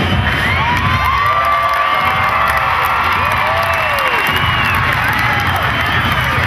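A crowd of spectators cheering and shouting, with many individual voices calling out over the steady noise of the crowd.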